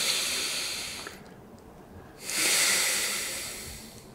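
A person breathing hard through the nose on instruction while fingers press on the sides of the nose during a nasal adjustment for a deviated septum: two long, hissing breaths, the first fading in the first second and the second starting about two seconds in.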